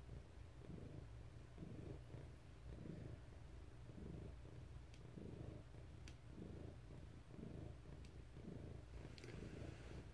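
A cat purring faintly close to the microphone, swelling and fading in even waves with each breath. A few faint ticks fall in the second half.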